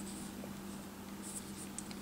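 Faint handling noise of a small vinyl figure being turned in the hand and set down among other figures in a cardboard display box: a few light clicks and rustles over a steady low hum.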